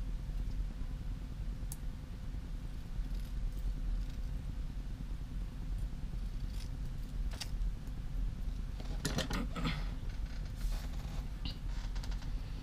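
Steady low background hum, with scattered faint taps and a short burst of rustling and clicking about nine seconds in as small craft pieces are handled on a cutting mat.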